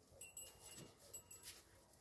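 Near silence, with a few faint, brief high-pitched chirps.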